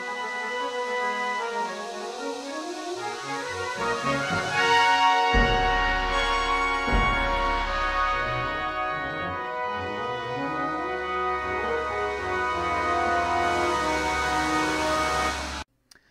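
Brass band music played back from the Sibelius notation program: full sustained brass chords building and climbing, with two heavy low percussion hits about five and seven seconds in. The music cuts off suddenly just before the end.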